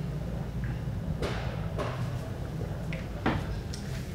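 Quiet sipping from a ceramic mug, then a few light knocks as the mug is set down on a wooden tray, the most distinct about three seconds in, over a steady low room hum.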